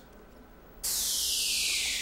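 Game-show transition whoosh: a loud hiss that starts suddenly about a second in and sweeps downward in pitch, marking the category board coming up on screen.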